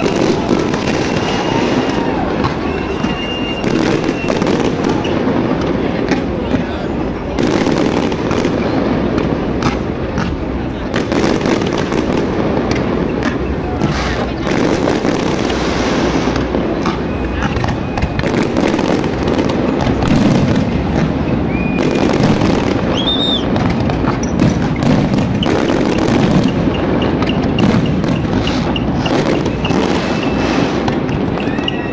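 Large fireworks display: a dense, continuous barrage of crackling bursts and bangs, with a few short whistles.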